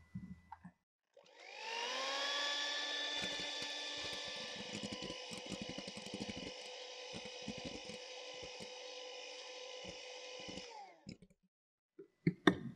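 Electric hand mixer beating egg whites into meringue in a glass bowl: the motor starts about a second in, its whine rising and settling into a steady pitch, with light irregular knocks under it. Near the end it is switched off and the whine falls away.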